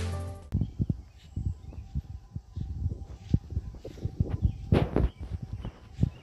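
Background music ends about half a second in. It is followed by a person's footsteps on grass, irregular soft thumps several a second, mixed with handling knocks on a hand-held phone microphone, one of them louder about five seconds in.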